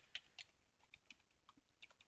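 Faint computer keyboard typing: a scattered handful of separate key clicks at an uneven pace.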